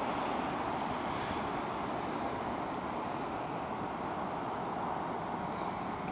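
Distant road traffic on a snow-covered road: a steady wash of car and tyre noise with no single car standing out.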